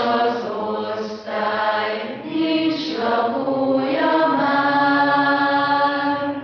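Vocal music: voices singing a slow melody in long held notes, phrase by phrase, with short breaks between phrases.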